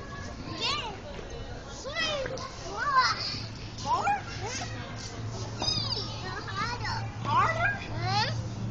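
Children's voices in a playground: high squeals and calls that rise and fall in pitch, one every second or so. A low steady hum joins about three seconds in.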